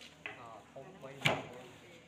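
A single sharp wooden knock about a second in, as the wooden beater of a traditional mat-weaving loom is brought in against the mat, with faint voices around it.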